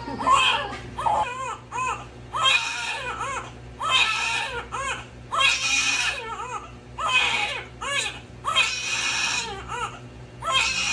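Newborn baby crying in a string of loud wails, a new one about every one and a half seconds. It is crying in pain while its heel is pricked and squeezed for a newborn blood-spot screening test.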